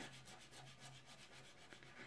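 Faint scratchy rubbing of a soft pastel stick on paper as colour is laid down in short strokes.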